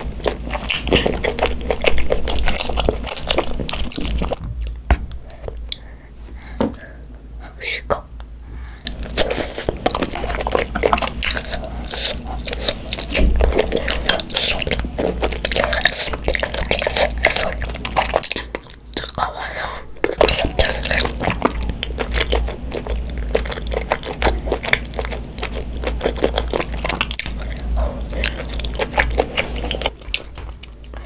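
A young girl talking close to the microphones while eating, with wet chewing and mouth sounds from spicy tteokbokki.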